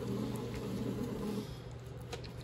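Pohl Schmitt bread machine's motor turning the kneading paddle through raisin dough: a steady low hum with uneven churning that eases after about a second and a half.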